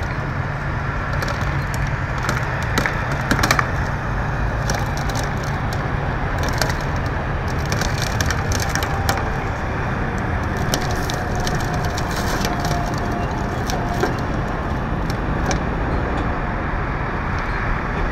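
Overturned SUV being rolled off its roof onto its side, with many sharp cracks and crunches of broken glass and crumpled body panels scattered throughout, loudest about three and a half seconds in. A steady low rumble runs underneath.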